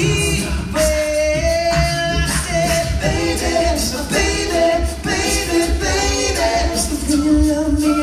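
Male a cappella group singing live: a lead voice over close backing harmonies and a sung bass line, with a steady vocal beat.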